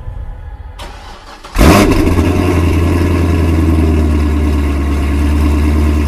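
Chevrolet Corvette C6 Z06's 7.0 L LS7 V8, breathing through American Racing headers and a Corsa exhaust, starting up. The starter cranks briefly, the engine catches with a loud flare about a second and a half in, then settles into a steady, deep idle.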